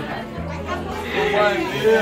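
Indistinct voices of a party crowd chatting over background music, one voice louder in the second half.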